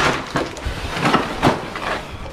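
Black plastic trash bag rustling and crinkling as it is handled, with several sharp knocks scattered through.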